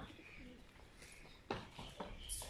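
Faint bird calls, with a single sharp knock about one and a half seconds in.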